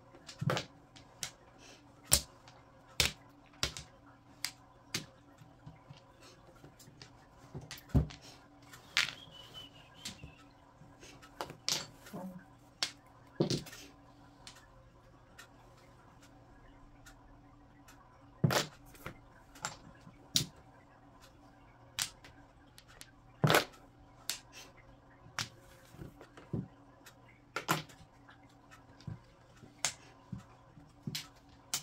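Mahjong tiles clicking and clacking on the table as players draw and discard, in irregular sharp knocks, some much louder than others. A faint steady hum lies underneath.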